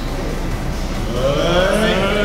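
Several men let out a long, drawn-out "heeeee" cheer, starting about a second in and gliding upward in pitch before holding, over background trance music.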